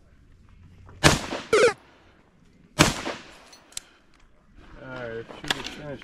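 Three loud gunshots at a shooting stage, about a second, a second and a half and nearly three seconds in. A voice starts near the end.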